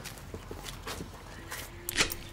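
A few scattered footsteps and light knocks, with a sharper click near the end.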